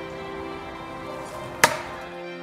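A single sharp chopping impact about one and a half seconds in, over steady background music.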